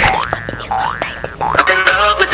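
A cartoon-like rising 'boing' sweep, repeated about three times roughly every 0.7 s, then music starting about three-quarters of the way in.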